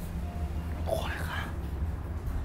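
A man's short, breathy, whispered groan about a second in, a pained reaction to the burn of extremely spicy ramen, over a steady low hum.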